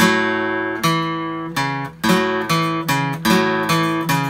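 Steel-string acoustic guitar strumming an open A chord in a blues shuffle, the pinky stretching up to the sixth (F sharp) and back to the fifth. There are about seven strikes, roughly every half second, each left to ring.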